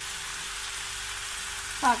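Chopped bitter gourd, onion and chillies frying in oil in an aluminium pot, a steady sizzle that comes in suddenly at the start.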